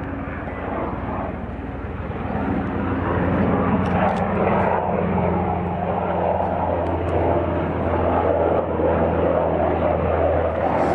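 Propeller aircraft engine droning steadily, growing louder from about three seconds in, its pitch dropping slightly as it passes.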